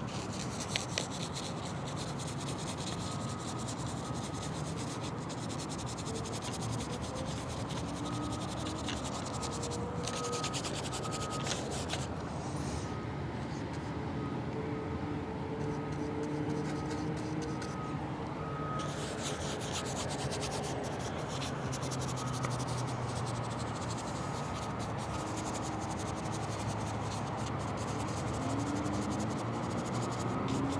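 Stiff bristle brush scrubbing oil paint onto a canvas panel in rubbing strokes. The strokes stop for several seconds a little before halfway, then start again.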